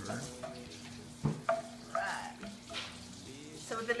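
A spoon stirring and scraping thick melted chocolate in a pot, with a single sharp knock a little over a second in.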